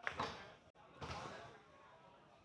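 Foosball ball clacking against the table's rod men and walls during play: two sharp clacks near the start, then quieter knocks about a second in.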